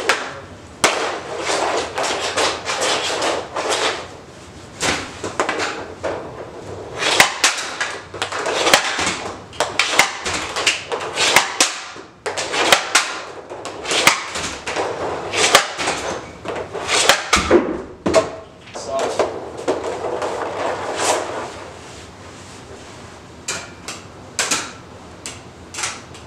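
Hockey sticks and pucks on a synthetic ice shooting pad: a long run of sharp cracks as shots are taken and pucks strike, between stretches of scraping as pucks are stickhandled and slide across the surface, in a small echoing room. It quietens for the last few seconds, leaving a few separate clicks.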